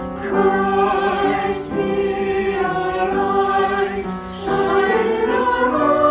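A small mixed choir of separately recorded voices blended together, singing a slow sacred song in long held phrases. New phrases begin about two seconds in and again near the middle.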